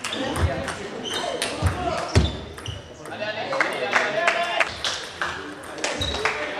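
Table tennis ball clicking off the bats and the table in an uneven series during a rally, in a large hall, with people talking in the background.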